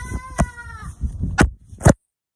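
A cat's single meow: one drawn-out call lasting just under a second, falling slightly in pitch. It is followed by a few sharp clicks, the last near the end being the loudest.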